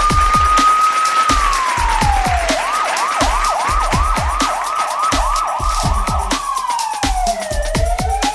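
Outro jingle with a police-style siren sound effect over a thumping drum beat. The siren wails up and down, switches to a fast yelp for about four seconds in the middle, then sweeps down and starts rising again near the end.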